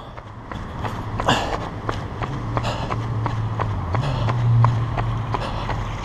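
A runner's footsteps on asphalt: a run of quick light impacts, over a low steady hum that rises briefly about four seconds in.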